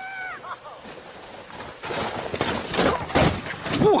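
A sled sliding fast over snow: a rough scraping hiss that starts about halfway through and grows louder as the sled passes close, with a few bumps in it.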